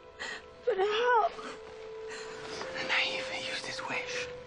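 Soft film score holding one steady note, with a person's breathy gasps and a short, wavering moan about a second in.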